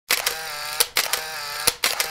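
Intro sound effect of three quick mechanical cycles, each a sharp click, a steady buzzing whir lasting most of a second, and another click.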